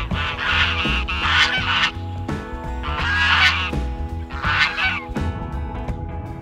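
Domestic geese honking in four bursts of calls over steady background music.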